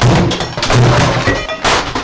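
A man's raging outburst: loud, distorted yelling mixed with banging and smashing, so loud it overloads the microphone.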